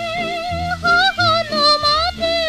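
Vintage early-Showa-era Japanese popular song recording: a woman sings a high, held melody with a wavering vibrato over a steady, rhythmic accompaniment.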